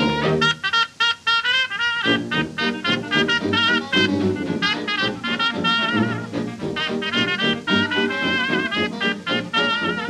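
Early-1930s jazz dance band recording playing an instrumental chorus, horns carrying the melody with a wide vibrato over a steady rhythm section. The band drops out briefly twice about a second in.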